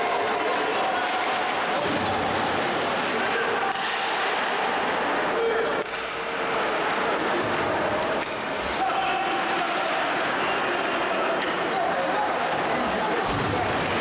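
Ice hockey arena ambience during play: a steady wash of spectators' voices and shouts, with skates on the ice and a few knocks of puck or sticks against the boards.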